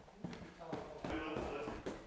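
Footsteps going down a staircase: a few separate, uneven steps, with faint voices behind them.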